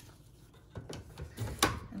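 Plastic embroidery hoop being fitted onto an embroidery machine's embroidery arm and clicked into place: a few light knocks and clicks in the second half, with one sharp click the loudest near the end.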